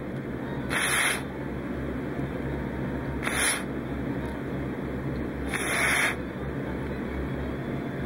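Three short hissing puffs of air, each about half a second long and spaced a couple of seconds apart, over a steady low hum.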